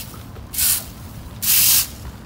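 Two strokes of a fan rake scraping dry leaves and grit across asphalt, each a short, loud, high scraping sweep, about a second apart.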